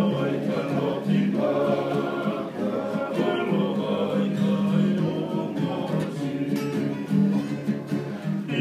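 Several men singing together in harmony, accompanied by strummed acoustic guitars.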